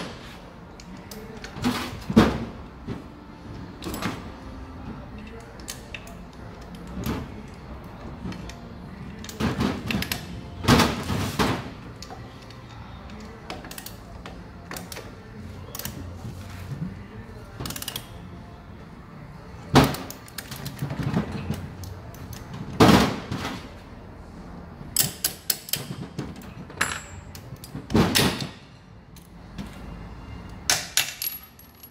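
Irregular clinks and knocks of metal parts and hand tools being picked up, set down and fitted on a workbench while a pump and reduction gearbox are put together, with a quick run of small ticks near the end.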